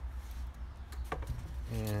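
A couple of light clicks from a bolt-on Stratocaster neck being lifted out of its neck pocket and handled, over a steady low hum; a man starts speaking near the end.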